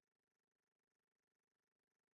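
Near silence: only a very faint steady hum.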